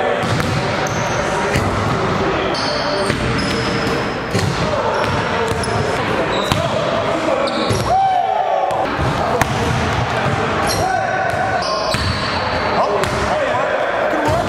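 Basketballs bouncing on a hardwood gym floor, with short impacts, sneaker squeaks and indistinct voices and shouts echoing in a large gym.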